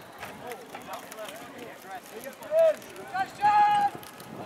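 People shouting during a lacrosse game: scattered calls and cheers, then one long, loud, high-pitched yell near the end.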